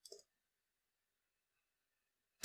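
Near silence, with a couple of faint keyboard keystroke clicks right at the start.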